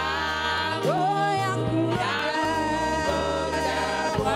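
A church praise team of male and female voices singing a gospel song together through microphones, over steady low sustained accompaniment.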